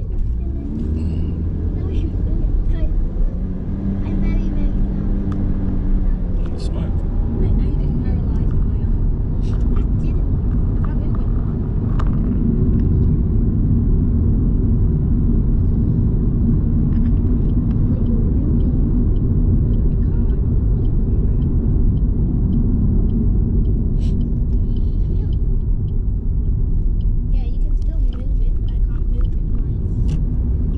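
Steady low rumble of a car's engine and tyres on the road, heard from inside the cabin while driving at speed, with scattered light clicks and taps over it.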